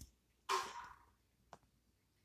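A short, breathy exhale close to the microphone about half a second in, fading quickly, then a single faint click; otherwise quiet room tone.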